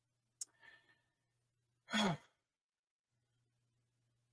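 A man's short sigh, voiced and falling in pitch, about two seconds in, preceded by a faint mouth click and breath under a second in.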